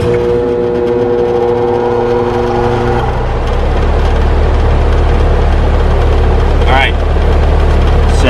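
The compressor of a 5-ton air-conditioning condenser hums at locked rotor as it tries and fails to start, drawing over 133 A inrush: a hard-starting compressor with no start capacitor fitted. The hum comes on suddenly at several steady pitches, and about three seconds in it gives way to a deeper steady hum.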